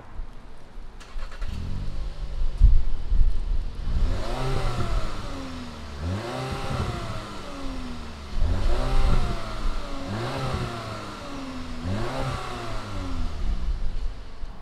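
2019 VW Beetle's 2.0-litre turbocharged inline-four starting up, heard from behind at the exhaust. It catches about a second and a half in, then is revved in about five blips, each rising and falling, roughly every two seconds.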